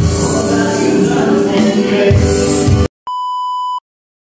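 Band music driven by an electronic drum pad kit, with a strong beat, cut off abruptly about three seconds in. Moments later a short, steady electronic beep sounds for under a second.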